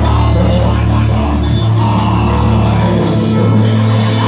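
Live gospel worship music played loud by a band with a deep, held bass line, with singers on microphones over it.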